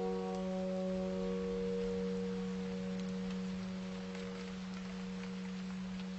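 Soft solo piano music: one low chord held and slowly fading, with no new notes played.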